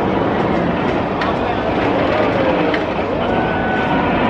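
Bolliger & Mabillard inverted roller coaster train running on its steel track through the vertical loop, a steady loud noise, with riders' voices gliding over it from about halfway through.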